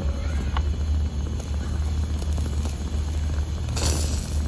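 Propane fire pit's gas flames burning steadily: a low rumble with an even hiss.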